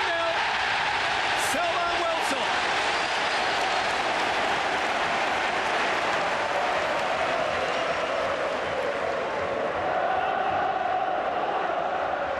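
Football stadium crowd cheering after a goal, a loud steady wall of voices and applause.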